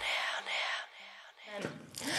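Quiet gap after the music cuts off: faint breathy noise, then a short rising whoosh near the end, a transition sound effect.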